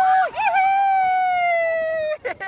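A young child's long, high-pitched scream: two held cries with a short break between them, the second slowly falling in pitch. It comes as she is dipped into an incoming wave.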